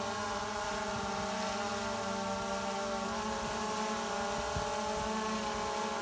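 DJI Phantom 4 Pro V2 quadcopter flying under load, carrying a full-size life preserver on a cord, its propellers making a steady whine of several tones whose pitch wavers slightly.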